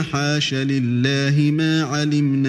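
A male reciter chanting the Quran in Arabic in melodic tajweed style, holding long notes and sliding between pitches.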